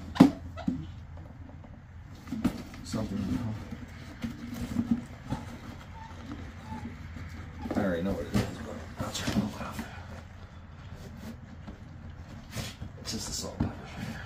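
Briefcases being handled: two sharp clicks, typical of a case's latches, right at the start, then scattered knocks and rustling as the cases are lifted and turned over.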